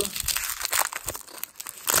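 Wrapper of a 1993 Bowman baseball card pack being torn open and peeled back by hand: a continuous run of crinkling and crackling.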